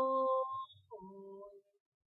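A single unaccompanied singing voice holds the last note of a sung line, which ends about half a second in. A shorter, softer, lower note follows about a second in.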